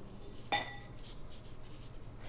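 A small metal spoon clinks once against a glass dish about half a second in, a short bright tap with a brief ring, while scooping dry cereal.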